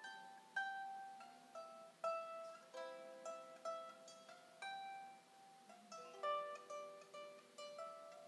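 Solo harp, its strings plucked by hand in a slow melody, one or two notes a second, each note left to ring into the next.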